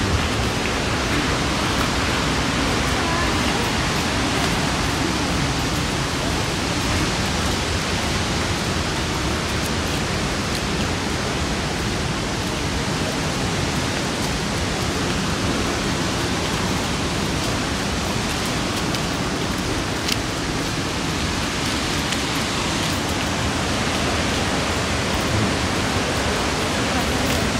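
Dunhinda Falls, a large waterfall, rushing steadily: an even, unbroken noise with no breaks or rhythm.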